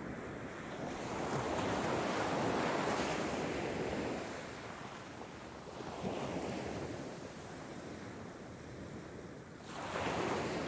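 Ocean surf: waves rushing in, swelling about a second in and again about six seconds in, each time falling away again. The sound changes abruptly just before the end.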